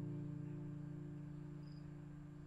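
Acoustic guitar's final chord ringing out and slowly fading.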